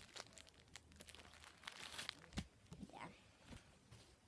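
Paper tissue being pulled out and crumpled: faint crinkling and rustling with many small clicks, busiest about two seconds in.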